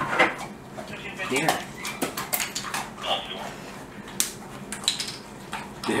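Young Rottweiler-mix dogs taking and chewing crunchy dog treats: a run of sharp, irregular crunching clicks.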